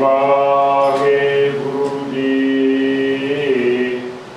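A man's voice intoning a line of Gurbani scripture in a melodic chant, drawn out in long held notes, with the pitch stepping down just before the phrase ends.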